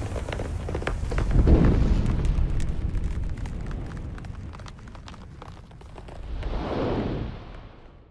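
Cinematic logo-intro sound effect: a deep rumbling boom scattered with crackling pops, surging about a second and a half in, swelling once more near the end and then fading out.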